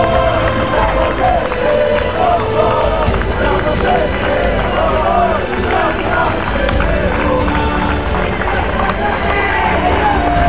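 Football supporters singing a chant together in the stand, many voices at once, over a steady low rumble on the microphone.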